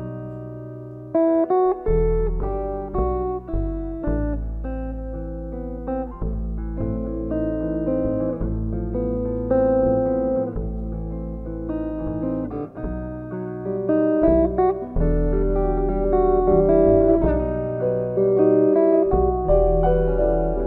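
Live jazz: a plucked double bass walking under single notes from a hollow-body electric guitar.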